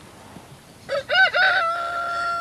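A rooster crowing. It begins about a second in with a few short broken notes, then holds one long note.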